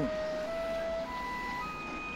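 Soft dramatic background score: a few held, sustained notes that step upward in pitch one after another.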